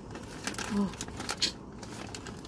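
Plastic snack bag crinkling as it is handled, a few separate sharp crackles.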